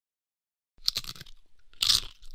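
Silence, then two crisp crunching bites about a second apart, a sound effect of something crunchy being bitten into.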